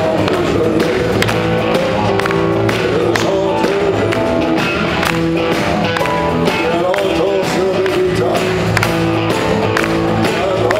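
Live band playing rock-style music: a drum kit keeps a steady beat under bass, guitars and a wavering melodic lead line.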